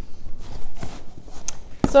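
A plastic scoop stirring dry peat moss, perlite and vermiculite in a plastic tote: irregular rustling and scraping.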